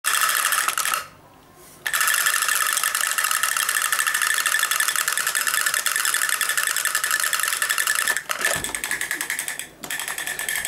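Battery-powered drumming toy figures beating their small plastic drums in a fast, steady mechanical clatter. It cuts out for under a second about a second in and stops again just before the end.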